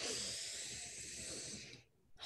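A woman breathing in slowly and deeply through the nose, a steady airy hiss lasting nearly two seconds that eases off slightly before it stops. It is the deliberate four-count inhale of a paced breathing exercise.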